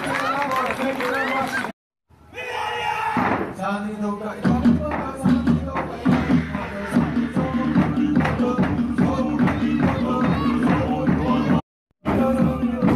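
A crowd shouting and cheering, cut off abruptly; after a short silence, show music starts up with a steady, pulsing beat and voices over it.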